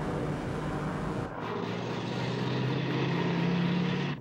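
A rushing whoosh for about the first second, then an oncoming Ford pickup truck approaching head-on, a steady low drone that grows steadily louder as it closes in for a near-collision.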